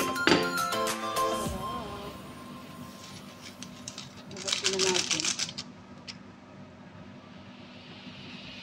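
Upbeat background music that stops about two seconds in, then a quieter stretch; about halfway through, a brief crisp rattle of seasoning granules poured from a packet into a pot of soup.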